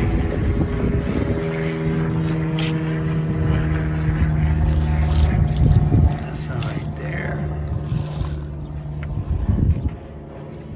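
A motor engine running steadily at one constant pitch, with low rumble underneath; it gets quieter after about six seconds.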